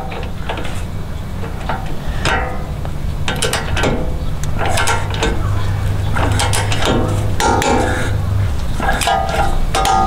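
Ratchet or torque wrench clicking in short runs as the four bolts holding the new lower ball joint to the steering knuckle are tightened to spec, over background music.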